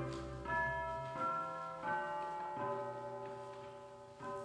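Soft, slow opera pit-orchestra music: a few single pitched notes struck about every three-quarters of a second, each ringing on and fading, growing quieter through the passage.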